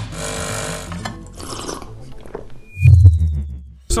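Edited sound effects over music: a hissing noise in the first second, a brief high beep, then a deep boom about three seconds in that fades away.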